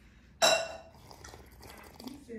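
Ice clinking against a drinking glass as it is tipped up to drink: one sharp clink with a brief ring about half a second in, then quiet sipping.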